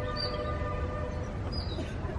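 Outdoor ambience with low rumble: a steady, held multi-pitched tone, like a distant horn, fades out a little after a second in, and two short high bird chirps sound, one early and one near the end.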